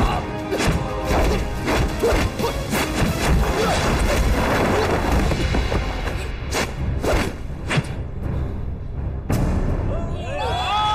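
Dramatic film score under a fast series of punch and body-blow sound effects, with several sharper hits standing out in the second half, the last about nine seconds in.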